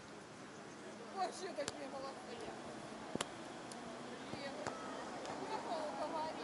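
People's voices calling across the court, with three sharp slaps about a second and a half apart, the middle one loudest: hands striking a beach volleyball in play.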